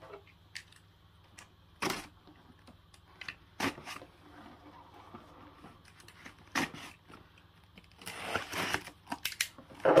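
Cardboard shipping box being handled: a few separate knocks and scrapes, then a longer stretch of rustling and scraping near the end as the packing tape along the seam is cut with a utility knife.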